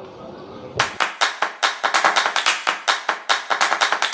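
Electronic background music's percussion intro: a quick run of sharp percussive hits, several a second, starting about a second in and building into the full track.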